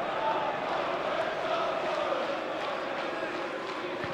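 Football stadium crowd: a steady din of many voices, with fans chanting.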